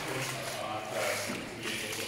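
Water sloshing as someone wades through shallow water on a flooded tunnel floor, with faint voices in the background.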